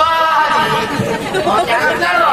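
A man's voice through a microphone and loudspeaker, raised and high-pitched in long, wavering phrases, over crowd chatter.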